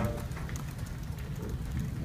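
Pause in speech: steady low room noise, a dull hum with faint scattered ticks.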